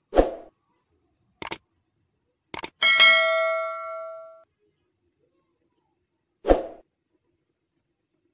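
Subscribe-button animation sound effects: a soft thump, two sharp mouse-style clicks, then a bell ding that rings out and fades over about a second and a half, and a second thump near the end.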